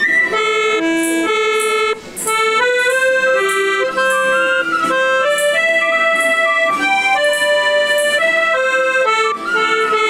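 A red piano accordion played by a child: a simple melody of held notes stepping up and down, with a brief break about two seconds in.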